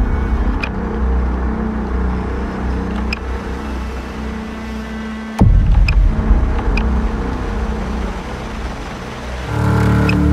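Dark horror-trailer soundscape: a low, rumbling drone with held low tones, broken by one sudden hit about five and a half seconds in, after which the rumble carries on.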